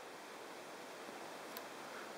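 Quiet, steady hiss of room tone, with one faint tick about one and a half seconds in.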